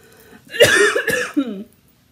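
A woman coughing: a loud fit of coughs lasting about a second, starting about half a second in.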